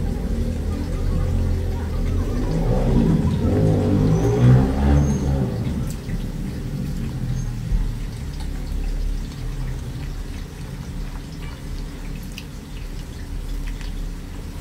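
Soft, wet mouth sounds of biting into and chewing a cream-filled crepe roll, over a steady low rumble, with a short run of pitched tones about three seconds in.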